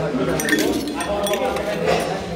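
A steel spoon clinking a few times against stainless steel bowls on a steel thali plate, with people talking in the background.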